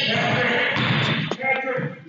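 Raised voices shouting, echoing in a gymnasium, with a single sharp knock about a second and a third in.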